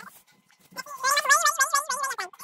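A loud, high, wavering cry that starts about two-thirds of a second in and carries on, its pitch wobbling up and down several times a second.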